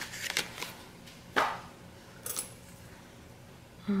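Paper sticker sheets in their translucent sleeves being handled: a few soft rustles and clicks in the first second, then one sharp tap about a second and a half in, and a faint one a second later.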